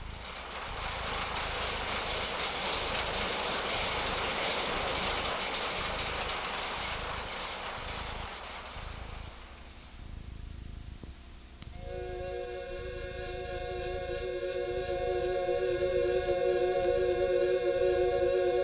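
A rushing noise swells and dies away over the first ten seconds or so. Then sustained electronic keyboard chords come in about twelve seconds in and build, with a rising glide near the end: the instrumental opening of the song.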